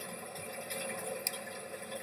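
Low, steady background hiss of a small room between words, with one small click a little past the middle.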